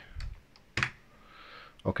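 A few separate computer keyboard key taps, the loudest just under a second in, as a number is typed into a software value field.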